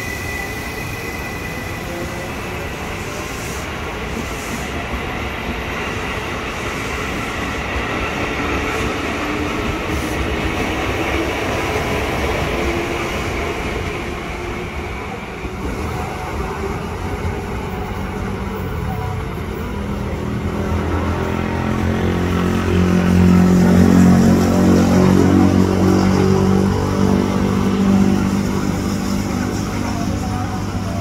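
Electric KRL commuter trains at a station platform: steady rail running noise for the first half, then from about two-thirds in a steady low electric hum from a train's motors that swells and then eases off.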